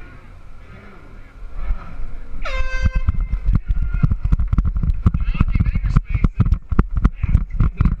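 An air horn blares about two and a half seconds in and is held for about a second. Then dense, loud, irregular low thumping and rattling follows as the camera rides on the moving power-wheels racer.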